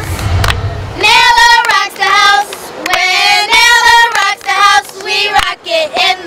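Young girls' high voices singing a campaign chant in short rhythmic phrases.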